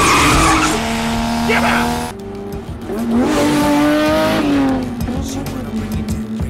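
Sports car engines at high revs in a film car chase: first a steady high-revving note with scraping and tyre noise, then, after an abrupt change about two seconds in, an engine climbing in pitch and dropping back near the middle, as in a hard run up through a gear.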